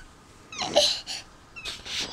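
Toddler whimpering and starting to cry in short breathy sobs, after hitting himself on the head.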